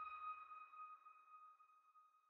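The last bell-like chime of the outro music ringing on and fading out, a clear high tone slowly dying away.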